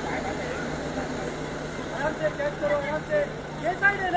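Outdoor field ambience with a steady background hum, and scattered short shouted calls from voices in the second half, the loudest just before the end.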